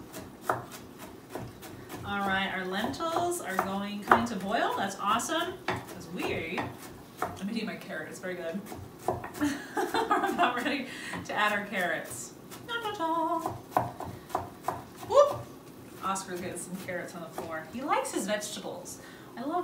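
A chef's knife dicing carrots on a wooden cutting board: a long run of quick, repeated chops of the blade striking the board.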